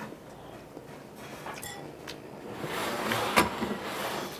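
Table sounds of eating with chopsticks: a few soft clicks, then a louder rustling stretch near the end with one sharp clink of chopsticks against dishes.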